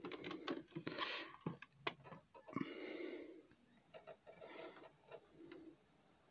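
Faint handling noise at a turntable–CD recorder: scattered sharp clicks and short plastic rustles as a blank CD-R is set into the recorder.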